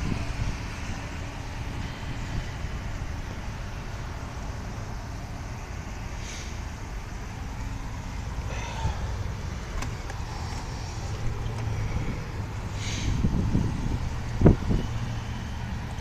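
Low, steady rumble of vehicle engines running, with faint scattered sounds above it and one sharp knock near the end.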